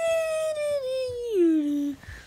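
A child's voice holding one long high note that slides down in pitch, dropping sharply in the last half-second, like a howl.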